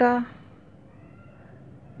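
A woman's spoken word ends, then there is low background noise with a faint, brief high-pitched call about a second in.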